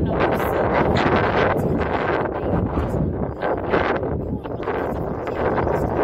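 Loud wind buffeting the microphone: a steady rush of noise with no clear speech above it.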